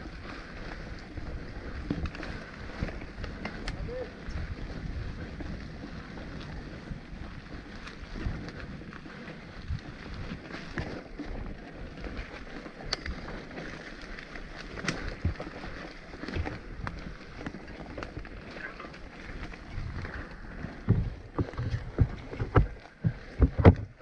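Mountain bike rolling along a dirt forest trail: steady tyre and rattle noise with scattered clicks and knocks, and heavier thumps over bumps in the last few seconds.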